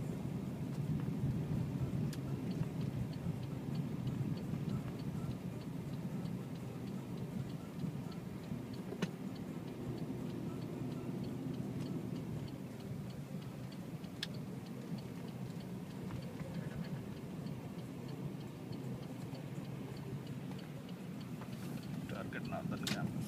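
Steady low road and engine noise inside a car driving slowly on a snow-covered road, with the turn signal ticking evenly, about two or three ticks a second, from a few seconds in until near the end.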